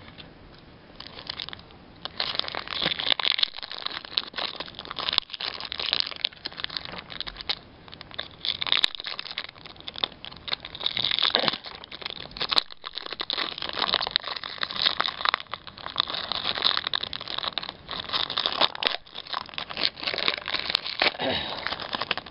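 Foil wrapper of a Pokémon trading card booster pack crinkling and crackling in the hands as it is torn open. It starts about a second in and goes on in dense, uneven bursts of crinkles.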